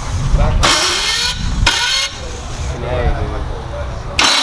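Corvette's starter cranking the engine in two short bursts in the first two seconds without it catching, the sign of starter trouble. A low rumble runs throughout, with voices over it.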